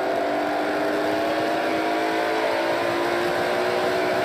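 NASCAR Pinty's Series stock car's V8 engine, heard from the in-car camera, running at steady revs on track with little change in pitch, over a haze of road and wind noise.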